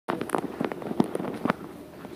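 A quick, irregular run of sharp knocks and clicks, about ten in two seconds.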